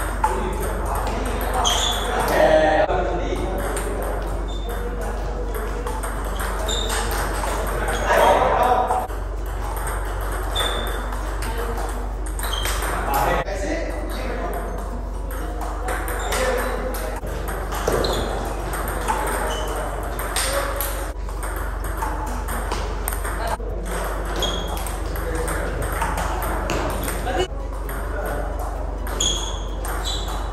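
Table tennis rally: the plastic ball clicking sharply off the bats and bouncing on the table, over and over, with short breaks between points.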